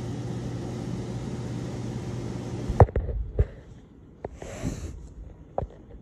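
Running ceiling fan motors give a steady electric hum with an airy whir. It cuts off suddenly about three seconds in. A quieter stretch follows with a few sharp knocks and a brief hiss.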